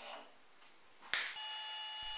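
Homemade T-bolt sliding along the T-slot of a plywood sacrificial fence: a faint scrape, then a single click about a second in. Just after, a steady hum with several high, even whining tones starts abruptly and is the loudest thing.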